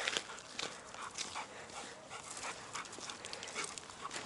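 A dog on a leash making quiet sounds, with a few faint clicks.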